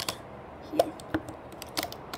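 A handful of small, irregular clicks and taps of a loom hook working rubber bands on the plastic pegs of a Rainbow Loom.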